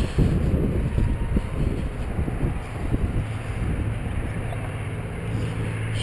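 Wind buffeting the camera microphone in uneven gusts. A low, steady hum comes in about halfway through.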